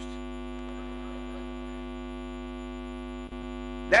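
Steady electrical hum in the sound system, with a faint click a little after three seconds in. A man's voice starts again at the very end.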